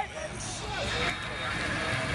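Outdoor crowd: scattered, indistinct voices talking over a low, steady rumble.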